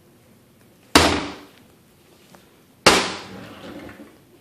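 Wooden kitchen cabinet doors being shut twice, about two seconds apart, each a sharp knock that rings out briefly.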